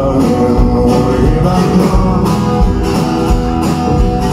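Live acoustic guitar playing a song's intro, with a steady low beat thumping under it.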